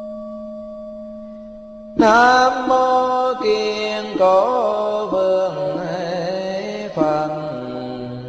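Buddhist chanting: a steady ringing tone holds, then a sharp onset about two seconds in brings in a voice chanting a long, drawn-out syllable whose pitch wavers and bends. Near the end the voice gives way to the held ringing tone again.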